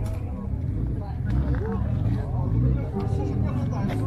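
Indistinct voices of people talking nearby, over a steady low rumble.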